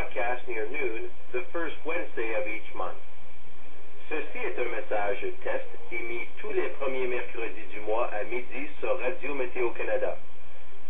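A weather radio receiver's speaker playing an announcer's voice reading Weather Radio Canada's monthly test message, with a short pause about three seconds in.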